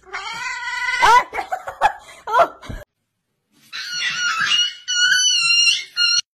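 Cats meowing. First comes a drawn-out meow that rises in pitch, then a few shorter cries. After a short break comes a run of high-pitched, wavering meows.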